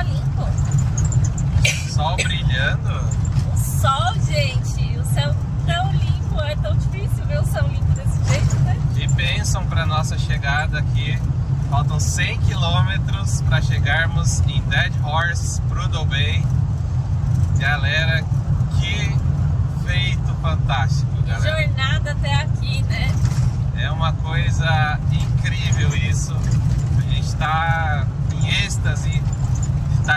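Steady low rumble of a motorhome's tyres and engine heard inside the cab while driving on a gravel road, with voices talking over it.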